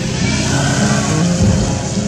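Background acoustic guitar music, with a rushing noise swelling over it in the first second and a half.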